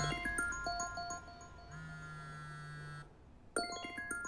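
Smartphone ringing with an incoming call: a chiming, marimba-like ringtone melody repeating, with a low buzz in pulses of about a second as the phone vibrates on a wooden table. It stops briefly about three seconds in, then starts over.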